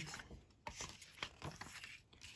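Faint rubbing of a paper scratch card being handled, with a few light taps.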